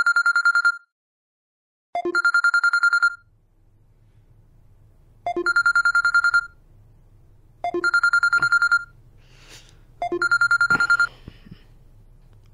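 A phone ringing with a trilling electronic ring. It rings five times, each ring about a second long, with uneven gaps. A faint low hum lies between the rings, and there is a soft knock near the end.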